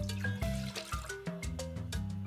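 Background music of short, quick notes over a bass line. Water pours from a plastic measuring cup into a small metal saucepan, briefly at the start.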